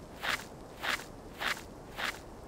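Footsteps on sandy, gritty ground: four evenly paced steps, about one every 0.6 s.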